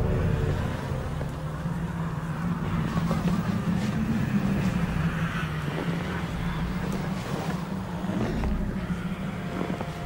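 Low, steady rumbling drone from the film's soundtrack, an ominous sound-design bed with a faint hiss above it.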